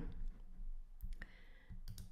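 A pause between spoken sentences: faint room tone with a few short, soft clicks, about a second in and again near the end.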